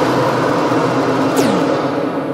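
The loud, noisy tail of a crash or boom sound effect, fading slowly, with a brief falling sweep about one and a half seconds in.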